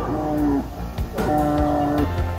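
Recorded dinosaur roars played through loudspeakers at animatronic dinosaur models: two long low calls, the first falling in pitch, the second held near the end, over background music.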